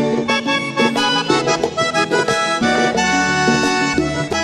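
Vallenato music: an accordion plays an instrumental passage between the sung lines, over a bass line and percussion.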